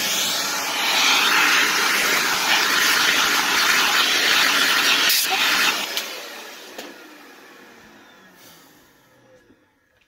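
Vacuum cleaner running, sucking grit out of the nooks of a plastic RC spur gear and cush drive parts. It is switched off a little over halfway through and winds down slowly to near silence.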